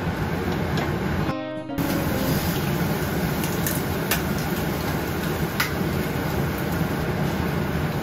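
Steady sizzle and hiss of mushrooms frying and broccoli steaming in pans on a gas stove, with a few light clicks of a wooden spatula against the pan. The hiss drops out briefly about a second and a half in, and soft acoustic guitar music plays underneath.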